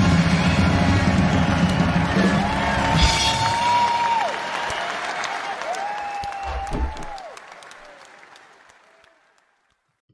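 Concert audience applauding over closing music, with two long held tones a few seconds in; it all fades out over the last few seconds.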